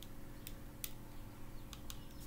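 Tarot cards being handled and drawn from the deck: four faint, sharp clicks at uneven spacing, over a low steady hum.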